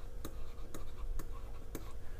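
Faint, sharp, evenly spaced ticks about twice a second over a low steady hum.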